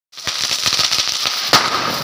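Handheld Diwali sparklers burning, a steady fizzing hiss packed with quick sharp crackles, with one louder crack about one and a half seconds in.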